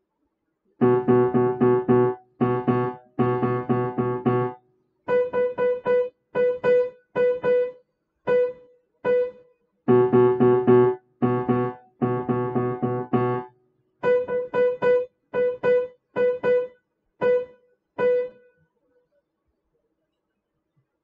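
Upright piano played in short, detached repeated notes as a compound-meter rhythm drill: a low chord struck in quick rhythmic groups alternates with a single higher note tapped in sparser patterns. The playing stops about two seconds before the end.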